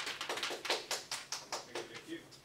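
A small group clapping: quick, uneven claps, several a second, thinning out near the end.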